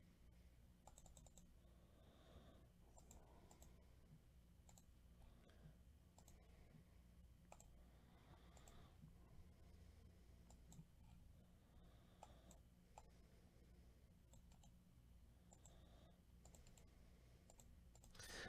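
Near silence with faint, scattered clicks of a computer mouse and keyboard over a low steady hum.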